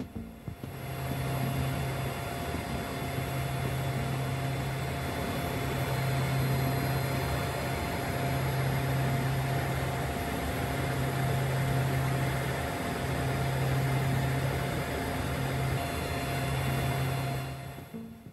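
Aircraft cabin noise: a steady engine drone with a low hum that cuts in and out every second or two, picked up by a handheld camera filming from inside the aircraft.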